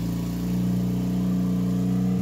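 Engine of a compact loader running steadily at an even pitch as the machine drives forward with its bucket lowered.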